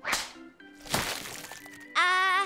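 Two sharp cartoon sound-effect hits about a second apart, over soft background music.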